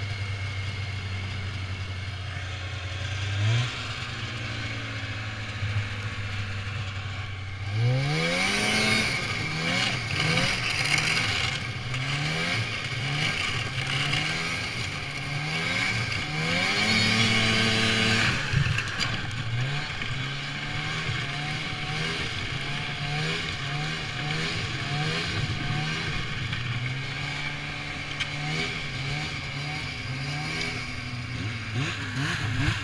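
A 1993 Polaris Indy 340 snowmobile's two-stroke engine idles with one quick rev about three seconds in. About eight seconds in it pulls away, and the engine pitch rises and falls with the throttle as it rides, highest about two-thirds of the way through, then settling into shorter throttle blips.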